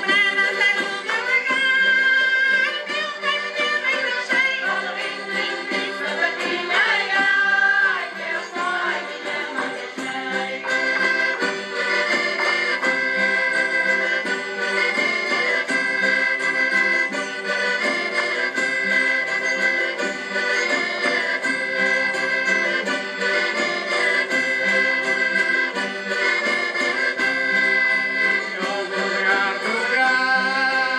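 Traditional Portuguese folk dance tune played by a folk group's band, with accordion prominent, in held, stepping melody lines.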